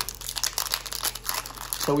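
Foil trading-card pack being torn open by hand, the wrapper crinkling in a run of crackly rustles. A voice starts right at the end.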